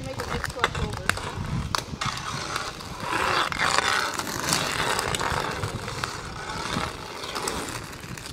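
Inline skate wheels rolling and grinding on asphalt through crossover strides, with sharp clicks and taps scattered through the first couple of seconds, and the rolling noise heaviest a few seconds in.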